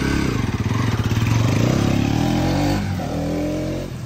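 Bajaj Pulsar NS200 single-cylinder motorcycle pulling away and accelerating. The engine note rises, drops once about three seconds in, rises again, and gets quieter near the end as the bike rides off.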